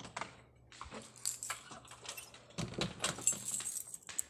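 A bunch of keys jangling and clicking in the hand while a door lock is worked, in irregular bursts that are busiest past the middle, over a faint low hum.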